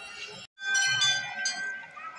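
A temple bell struck about half a second in, its ringing tone fading away over the next second.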